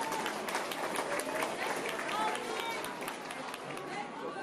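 Audience clapping, many scattered hand claps, with people talking over them.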